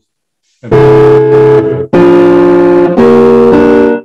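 Three loud sustained chords in quick succession on an electronic keyboard instrument, each lasting about a second and starting sharply. They are a sound example of chords tuned in 31-tone equal temperament.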